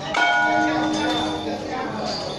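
A metal bell struck once, ringing with several steady tones at once that fade out over about a second and a half.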